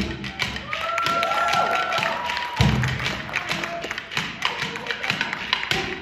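Hand percussion from a drum circle on cajóns and congas: a lighter passage of quick, rapid taps with the heavy low drum strokes dropped out, and a few held pitched notes in the first half.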